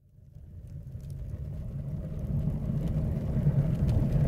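Low rumbling fire sound effect swelling steadily from silence as flames well up, building toward a burst of flame.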